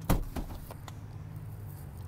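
Two knocks in quick succession, a louder one and then a lighter one, as the fold-down centre seat back of a pickup's front bench seat is handled, over a steady low hum.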